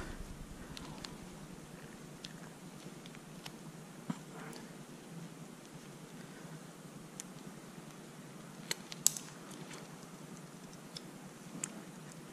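Faint handling clicks of small plastic and metal parts as a coil spring is compressed onto an RC car shock absorber and its spring base is worked into place against the spring's force. The clicks are sparse over a steady low hum, with a sharper click about nine seconds in.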